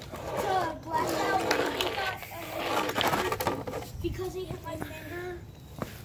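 A child's voice talking in stretches, words not made out, with a sharp click just before the end.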